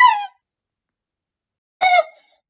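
A man's high-pitched, crying wail that rises in pitch and breaks off within half a second. Near the end a second wailed cry begins.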